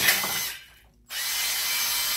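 Cordless drill boring a hole through an empty metal food can, in two runs: the first stops about half a second in, and the drill starts again about a second in.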